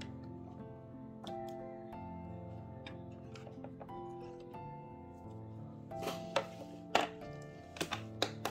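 Instrumental background music with slow, steady held notes, joined near the end by a few sharp clicks and knocks of nail tips and tools being handled on the table.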